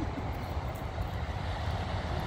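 Steady wind rumbling on a phone's microphone, with the even wash of ocean surf behind it.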